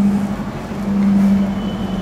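A steady low mechanical hum holding one pitch over a constant background noise.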